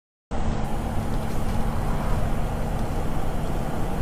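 Steady engine and road noise heard inside a motorhome's cab while it drives along a highway, with a low steady hum under it. The sound cuts out completely for a split second at the very start.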